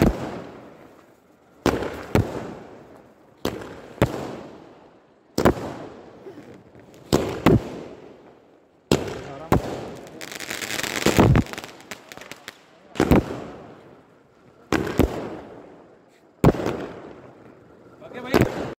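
Fireworks going off: a string of sharp bangs, one every second or two, each trailing off in an echo, with a longer hissing swell about ten seconds in.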